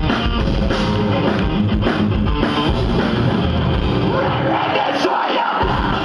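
Live metalcore band playing loud distorted electric guitars over bass and drums. About five seconds in, the bass and drums cut out for about half a second, then come back in.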